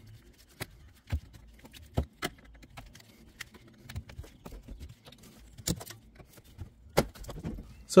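Scattered light clicks and taps of a metal pick prying at a fastener clip on a car's underbody splash shield, several separate sharp ticks with quiet between them.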